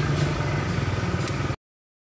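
A steady mechanical hum like an idling engine, with a few faint clicks. It cuts off abruptly about one and a half seconds in, leaving dead silence.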